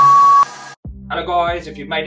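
Workout interval timer's beep, one steady high tone that ends about half a second in, signalling the end of the final interval. It sounds over electronic music that stops soon after.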